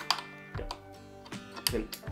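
Plastic lock on the end of a D'Addario Auto Lock strap clicking and tapping against the guitar's metal strap pin as it is fitted and locked, a few sharp clicks with the loudest near the end. The guitar's strings ring faintly from the handling.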